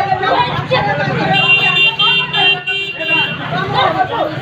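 Loud voices of several people talking over one another. In the middle, a high-pitched steady tone sounds in a quick run of short pulses for about two seconds.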